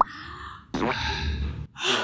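A woman's breathy gasp of surprise lasting nearly a second, followed by a second short breath near the end.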